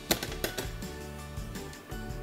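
Background music with a steady beat, and two sharp clatters near the start, the first the loudest, from the flipped aluminium sheet pan and wire cooling rack knocking on the counter.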